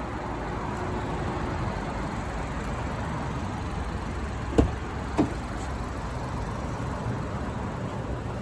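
Steady background hum and hiss, with two short knocks about half a second apart a little past halfway.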